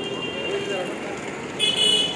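Road-traffic horns: a thin horn tone held through the first second, then a louder short honk near the end, over a low murmur of voices.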